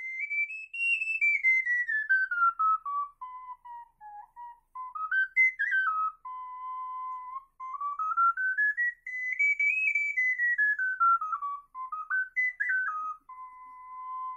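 A 12-hole soprano C transverse ocarina plays a stepwise scale up to its high F and down to its low A, ending on a held low C. Then a pendant ocarina plays the same kind of scale from about 7.5 s, reaching only the high E and ending on a held low C. Side by side, the two scales show the transverse ocarina's wider range: one note higher and two notes lower than the pendant.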